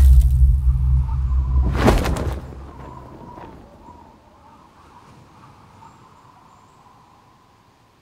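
Cinematic sound effects: a deep low rumble with a sharp whoosh about two seconds in, then dying away to a faint airy hiss.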